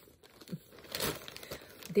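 Packing paper crinkling and rustling in short bursts, loudest about a second in.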